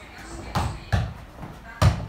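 A ball being kicked and bouncing on a rubber gym floor during a foot tennis rally: three hard thuds, the loudest near the end.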